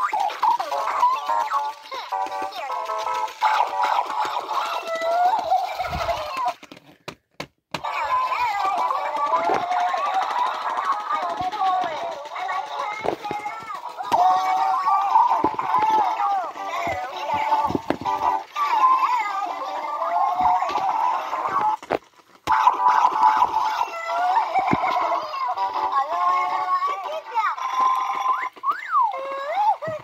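Electronic Furrballz fuzzy toys chattering and singing in high-pitched, squeaky voices, with short pauses about seven seconds in and again around twenty-two seconds.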